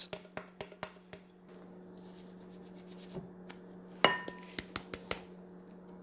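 Breadcrumbs shaken from a canister into a glass mixing bowl of ground meat, a quick run of soft taps in the first second, over a low steady hum. About four seconds in, a single clear clink rings briefly.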